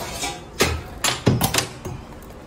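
A few sharp knocks and rattles, with a short ringing after some of them, as a folded plastic radar reflector is pulled out of its stowage and handled.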